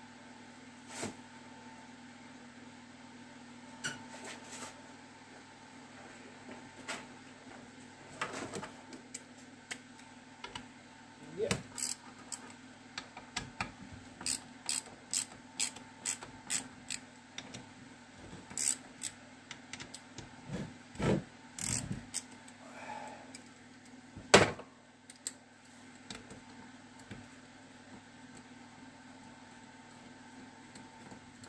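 Scattered metal clicks, taps and knocks of tools and parts being handled on a Zündapp KS 600 gearbox casing, coming thickest through the middle, with one louder knock near the end. A faint steady hum runs underneath.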